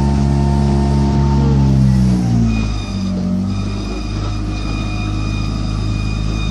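Boat's outboard motor running under power, its pitch falling as it is throttled back about two seconds in, then running steadily at a lower speed.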